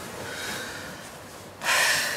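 A woman breathing in bed, ending in one sudden, loud, noisy breath, a sharp snort-like exhale or gasp, near the end.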